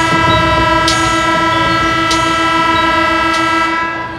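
Basketball arena's game horn sounding one long, loud, steady blast that stops near the end.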